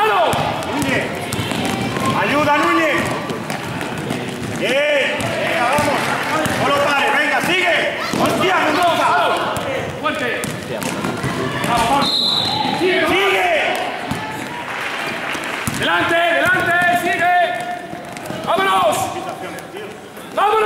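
Basketball being dribbled on an indoor court floor, amid continual shouting voices.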